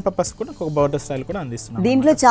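Speech only: people talking in a continuous run, with no other distinct sound.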